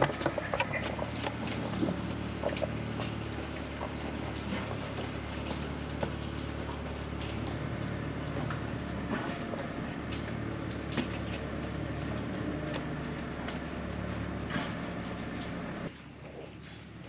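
Light clicks and scrapes of a metal mesh radiator cover being handled and positioned over a motorcycle radiator, over a steady low hum.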